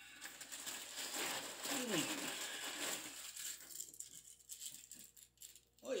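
A hand rummaging inside a cereal box, with the inner bag and cereal rustling and rattling for about three seconds. Then there is quieter crinkling of a small foil toy packet as it is drawn out.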